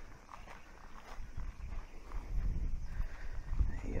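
Footsteps and the rustle of tall grass and weeds brushing past someone walking along a lake bank, with an uneven low rumble of handling on the microphone, growing louder in the second half.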